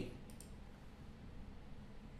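A couple of faint computer mouse clicks about a third of a second in, starting video playback, then quiet room tone.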